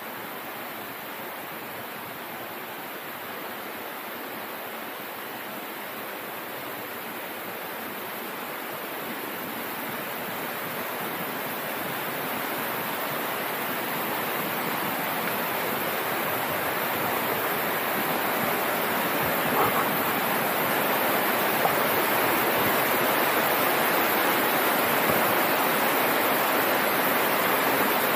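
Steady rush of a waterfall and its rocky stream, growing gradually louder as it is approached.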